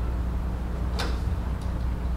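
A steady low hum of room noise, with one sharp click about a second in and a fainter tick shortly after.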